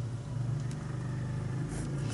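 Steady low engine-like hum, swelling slightly about half a second in, with a faint tap about halfway through as a plastic ruler is handled on paper.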